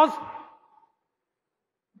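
The last word of a man's speech trailing off and echoing away over about half a second, then near silence for the rest of the pause.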